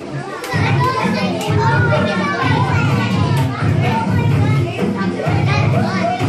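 A roomful of young children chattering and calling out, while the dance track starts playing about half a second in with a pulsing bass beat underneath the voices.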